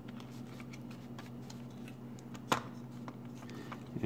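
Faint clicks and light handling noises from a microwave control board and its plastic parts being worked by hand, with one sharper click about two and a half seconds in, over a steady low hum.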